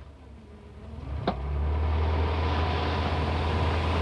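Car engine of a taxi pulling away: it grows louder about a second in, just after a short click, then runs steadily with a low hum.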